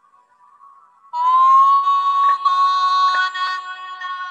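Music: faint soft tones, then about a second in a loud held high note over a sustained chord, with a couple of faint clicks.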